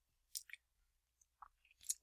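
Mostly near silence, broken by a few faint, brief clicks in the first half and a quick intake of breath just before speech.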